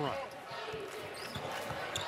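Basketball being dribbled on a hardwood court, a run of short bounces over the steady murmur of an arena crowd.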